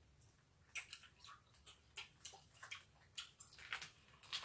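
Faint, scattered crinkles and clicks of small candy wrappers being pulled open by hand, irregular and a few a second.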